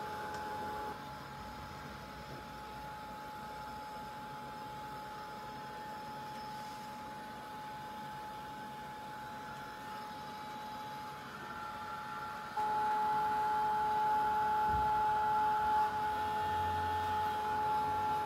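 Handheld craft heat tool running, its fan motor giving a steady high whine that gets louder about two-thirds of the way in, as the tool dries paint on chipboard pieces.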